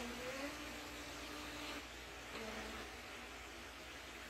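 Phomemo M110 thermal label printer feeding out a label: its paper-feed motor gives a faint, steady whine that stops a little under two seconds in, followed by a brief second whir about half a second later.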